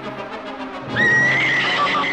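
Orchestral film-score music from a 1950s monster film, then about a second in a woman's loud, high scream that holds and wavers.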